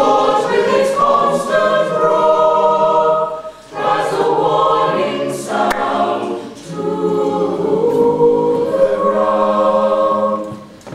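Mixed-voice a cappella choir singing in harmony: sopranos, altos, tenors and bass holding sustained notes, with brief breaks between phrases about three and a half and six and a half seconds in.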